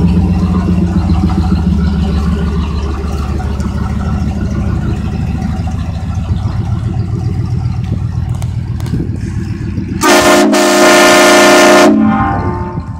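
A 1989 Camaro IROC-Z's V8 running through a Flowmaster exhaust as the car drives around, the rumble slowly fading. About ten seconds in, its Hornblasters Conductor's Special train horn sounds a short blast, then a held blast of about two seconds, the loudest sound.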